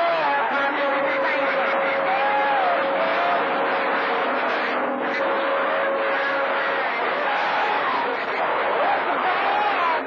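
CB radio receiving channel 28 skip: a loud hiss of static with garbled, overlapping distant voices and warbling tones. A steady whistle, the heterodyne of clashing carriers, runs until about seven seconds in.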